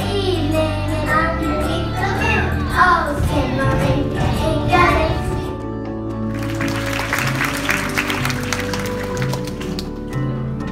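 Young children's choir singing together over a musical accompaniment with steady bass notes. About halfway through the voices give way to a dense, noisy wash over the continuing accompaniment.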